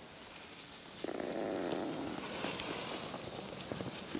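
Ski edges scraping and hissing over hard-packed snow as a skier carves turns close by. The noise grows louder about a second in, and a brighter hiss follows near the middle.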